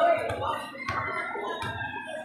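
Children's voices talking in the watching crowd, with a sharp tap about a second in.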